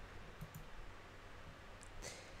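Quiet room tone with a few faint, short clicks, about half a second in and again near the end.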